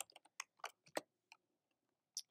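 Faint computer keyboard typing: several quick, separate keystrokes over the first second and a half, then a pause.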